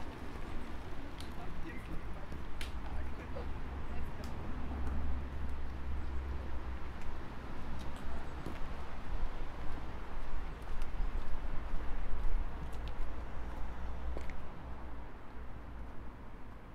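Footsteps on cobblestones while walking, scattered clicks over a steady low rumble.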